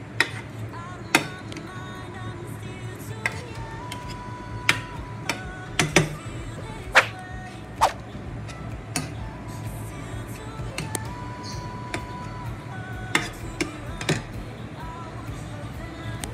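Metal slotted spoon knocking and scraping against a frying pan while a cream sauce is stirred: about a dozen sharp, irregular clinks. Background music plays underneath.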